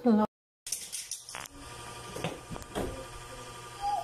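Small toy cars clattering as a child handles them on a hard floor: a few light knocks and rattles over a faint steady room hum. A brief snatch of a voice is cut off right at the start.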